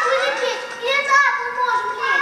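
Children's voices speaking on stage, in short phrases that rise and fall in pitch.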